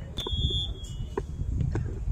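Referee's whistle: one steady blast a moment in, lasting about half a second and then trailing off faintly, over low field and crowd rumble.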